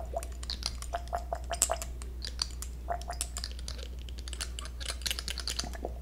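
Fingers handling a small object right at the ear of a 3Dio binaural microphone, making dense, irregular soft clicks and crackles. A steady low hum runs underneath.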